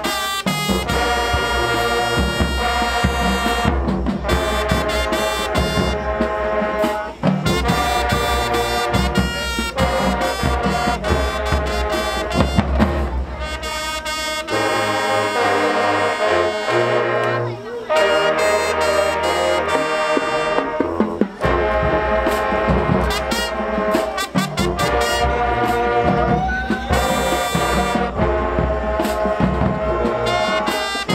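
Marching band playing a brass-heavy dance tune, with sousaphones, trumpets and trombones over a pounding drumline. Midway the drumming thins for a few seconds while the low brass holds long notes, then the full beat returns.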